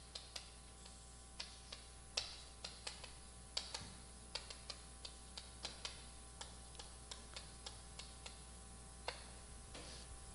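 Chalk striking and scraping on a blackboard as words are written: a faint, irregular run of sharp taps, about two or three a second, that stops shortly before the end.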